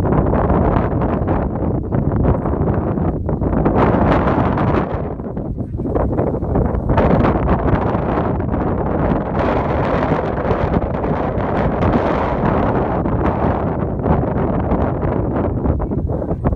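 Wind buffeting the microphone: a loud, gusting rumble that swells and eases, with stronger gusts around four seconds in and again through the middle of the stretch.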